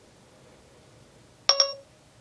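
iPhone's Siri activation chime: a short two-note tone about one and a half seconds in. It signals that Siri has woken on the locked phone from the spoken wake word and is listening.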